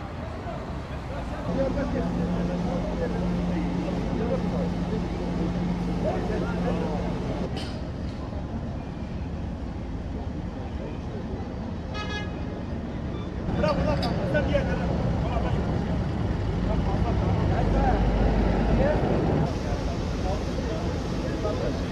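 Fire engines running at a street fire scene, with people talking in the background. A steady engine hum fills the first several seconds, and a short horn-like toot sounds about twelve seconds in.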